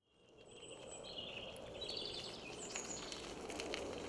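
Faint outdoor ambience fading in, with small birds singing high chirps and short warbling phrases over a soft, even background hiss.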